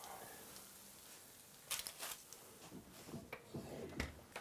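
Faint handling noises as a foil-lined baking tray is taken out of the oven: a few light clicks and scrapes, most of them about two seconds in, over quiet room tone.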